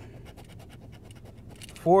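Scratch-off lottery ticket being scratched, its coating scraped away in rapid short strokes.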